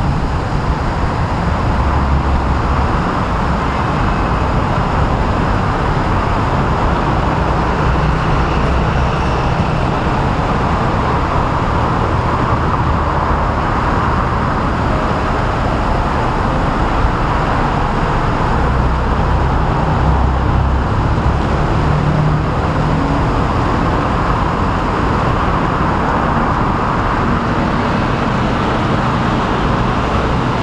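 Steady din of city road traffic, a continuous rumble with no pauses, swelling in the bass now and then as heavier vehicles pass.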